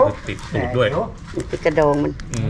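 A person's voice in short, drawn-out, cooing syllables repeated several times, with a steady low hum underneath.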